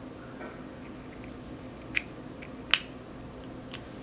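Light clicks and ticks of a metal hair-bow clip prying at a plastic MAC eyeshadow pot, with two sharper clicks less than a second apart in the middle as the pressed pan is worked loose from its case.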